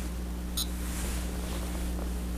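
A single short click about half a second in as a button on a Chronos GX digital chess clock is pressed, setting the clock running. A steady low electrical hum runs underneath.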